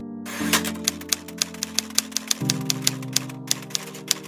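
Typewriter keystroke sound effect, rapid even clicks about five a second, over background music with sustained chords. The clicks pause briefly near the end, then resume.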